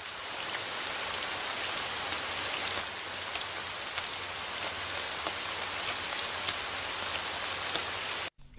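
Steady rain falling, with faint scattered ticks of individual drops.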